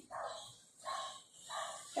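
Marker pen writing on a whiteboard: three short squeaky strokes about half a second apart as "a = 3" is written.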